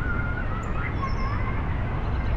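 Birds calling with thin, drawn-out whistles over a steady low rumble of outdoor background noise.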